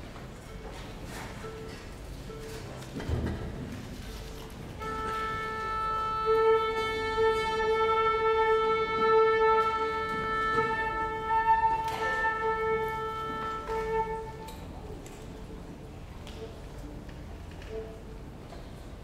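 Orchestra tuning: a single steady note at concert A, held for about ten seconds and swelling as more instruments join it. A single low knock comes about three seconds in.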